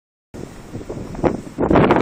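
Wind buffeting a mobile phone's microphone. It starts a moment in, with one sharp knock partway through, and grows louder near the end.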